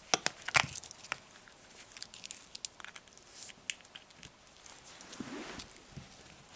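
Handling of an old iPod Touch and an Apple dock-connector VGA adapter as the adapter's plug is pushed into the bottom of the iPod. There are a few sharp plastic clicks in the first second, the loudest about half a second in, then lighter scattered ticks and rustles.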